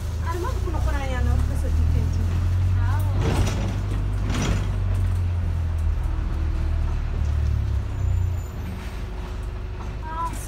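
Double-decker bus engine and drivetrain rumbling low and steady beneath the upper deck while the bus moves, louder through the middle and easing off near the end. Two short hisses come a few seconds in, and voices are heard near the start.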